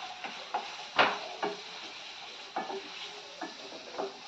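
Wooden spatula stirring and scraping food in a steel frying pan, with several short knocks against the pan, the loudest about a second in, over a faint steady sizzle of frying.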